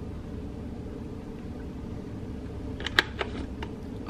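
Oat milk poured from a carton into a glass of iced coffee over a steady low hum, then a few light clicks and taps of glass and ice about three seconds in.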